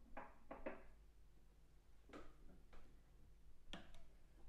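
Near silence: room tone with a few faint, short clicks and knocks.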